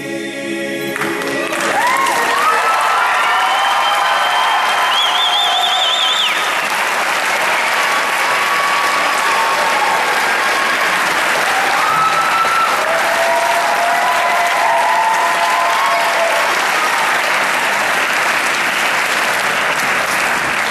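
Audience applauding at the end of a choir piece: the choir's final sung chord dies away about a second in, then loud, steady applause follows. Shrill gliding whoops rise above the clapping in the first few seconds and again midway.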